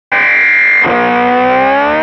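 Intro music on a distorted electric guitar: a held chord, then about a second in a new chord whose notes bend slowly upward.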